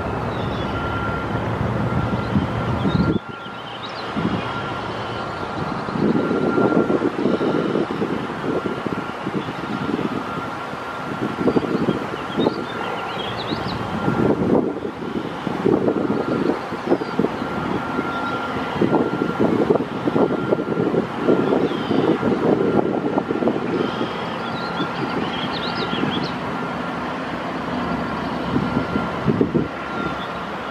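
Steady rumble of road traffic mixed with wind gusting on the microphone, the wind rising and falling and dropping off sharply about three seconds in. A faint steady whine runs underneath, and a few faint high chirps come and go.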